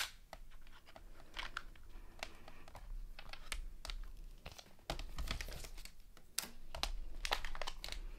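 Thin metal cutting dies and a plastic embossing folder being handled: scattered light clicks and taps of metal against plastic, with rustling of plastic and card packaging. A sharp click right at the start is the loudest.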